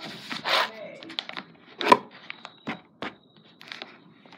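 Pen scratching and tapping on sketchbook paper while drawing: a few short scratchy strokes, then a run of small clicks with one sharp click about two seconds in.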